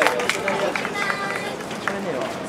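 Several people talking indistinctly at once, with a few short clicks.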